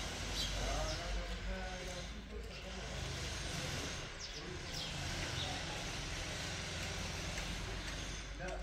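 Outdoor ambience: steady low wind rumble on the microphone, with faint distant voices and a few short high chirps.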